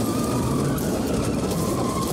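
Car chase sound from a film soundtrack: a car engine running hard with road and tyre noise, a steady rushing sound with a low rumble.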